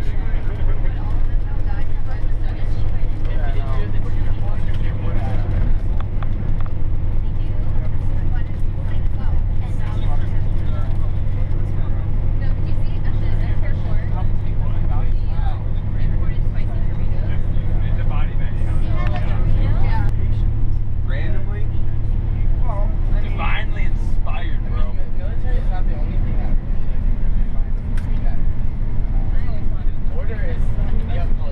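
Steady low drone of a bus's engine and tyres, heard from inside the cabin as it drives along, with faint voices of passengers talking.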